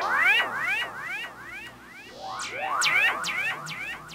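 Stylophone Gen X-1 played through effects pedals, its buzzy tone swooping up and down in repeated pitch arches about two a second. About halfway through, the pattern changes to sharp falling chirps about three a second.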